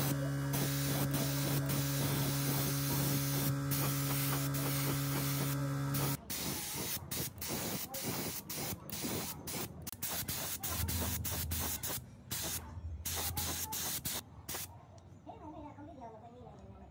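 A paint spray gun hissing as it sprays black paint, over a steady machine hum. About six seconds in the hum stops suddenly, and the spraying goes on in short irregular bursts, quieter near the end.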